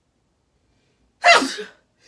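A woman sneezes once, loudly and suddenly, a little over a second in: an allergy sneeze.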